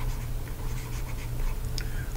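Stylus scratching and tapping on a tablet as words are handwritten, faint short ticks over a steady low hum.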